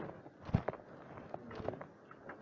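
Footsteps: an irregular run of soft thumps and light knocks, the heaviest about half a second in.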